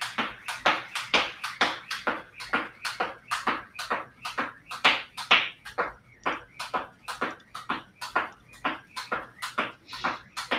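Jump rope skipping at single unders: the rope slaps the rubber floor mat and feet land in a quick, steady rhythm of sharp slaps.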